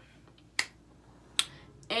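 Two sharp finger snaps, a little under a second apart.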